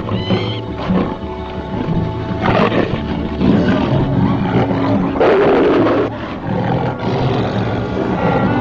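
Big cats roaring and snarling over orchestral film music, with two loud roars: one about two and a half seconds in and a longer one around five seconds in.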